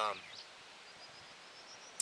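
Faint open-air field ambience with distant songbirds singing thinly in the background, after a brief spoken 'um'. A single sharp click near the end.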